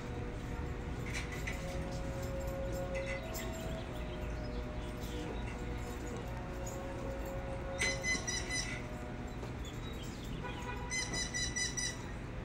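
A pet parrot calling: long held whistled notes, then two bursts of rapid repeated high chattering, about eight seconds in and again near the end.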